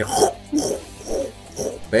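A man laughing in several short bursts.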